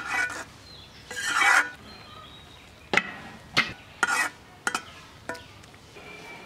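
Metal ladle stirring and scraping cooking lentils in a metal kadai: a long scrape about a second in, then five sharp clacks of the ladle against the pan spaced about half a second apart.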